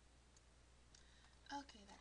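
Near silence: quiet room tone with a faint click or two from a computer mouse being used.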